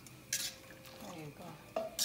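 A metal utensil stirring boiled shrimp in a stainless steel pot, clinking against the pot with a loud clatter about a third of a second in and another near the end, with scraping between.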